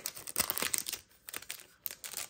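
Foil booster-pack wrapper crinkling and tearing as it is pulled open by hand, in a run of crackles that thins out after about a second.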